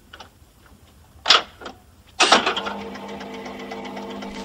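Jukebox sound effect: a sharp mechanical clack a little over a second in, then from about halfway a loud start settling into a steady mechanical hum, like the record-changer working before a record plays.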